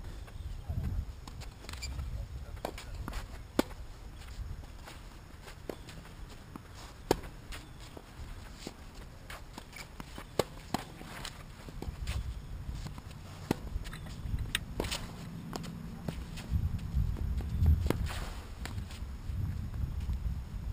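Tennis ball struck by rackets in a rally on a hard court: sharp pops every few seconds, with fainter ticks between them, over a low rumble.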